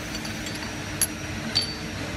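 Two light metallic clinks of stainless-steel pump parts knocking together as they are fitted back onto the machine, about a second in and near the end, the second with a brief ring, over a steady background hum.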